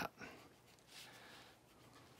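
Near silence with a faint, soft swish of a wet watercolour brush stroking across paper about a second in.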